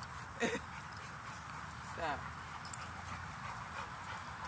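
A young Rottweiler giving a short whine that falls in pitch, during rough play with the other dogs.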